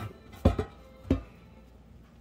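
Two short knocks of a raw Cornish hen and hands against a stainless steel pan, about half a second in and again just over a second in, the second with a brief metallic ring.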